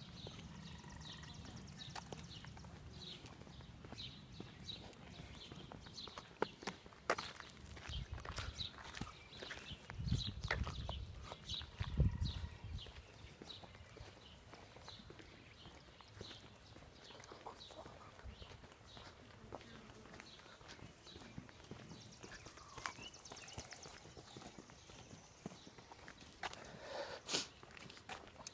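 Footsteps of someone walking at a steady pace on a concrete sidewalk, about two steps a second, heard close to a hand-held phone. Low rumbling wind noise on the microphone swells about ten and twelve seconds in.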